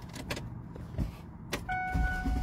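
Ignition key clicking as it is turned in a Ford car's steering column, then, near the end, a steady electronic warning tone from the dashboard as the engine starts to turn over. This is a start attempt on an engine just topped up with oil after its dipstick came out dry.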